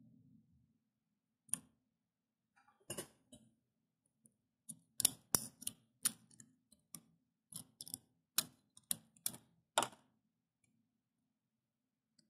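Irregular sharp plastic clicks and taps, about twenty over several seconds, from a small 3D-printed calibration tower being handled and picked at in the fingers.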